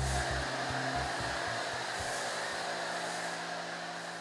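Pressure washer with a foam cannon spraying snow foam onto a car: a steady hiss that slowly grows quieter.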